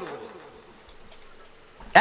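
A pause in a man's speech through a microphone: his voice trails off, then a faint steady hum holds until he starts speaking again near the end.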